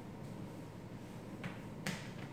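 A sharp, snap-like click near the end, with a softer click just before it, over a low steady room hum.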